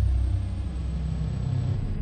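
Deep, steady rumble of an animated logo intro's sound effect, the low start of a music-and-whoosh sting.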